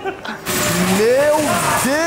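A man's long, wavering exclamation at the cold, over a steady rushing noise of air that starts suddenly about half a second in.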